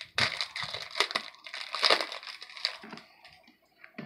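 Crinkling and crackling of a foil trading-card pack wrapper as it is torn open and handled, a dense run of crackles for about two and a half seconds. Fainter handling of the cards follows near the end.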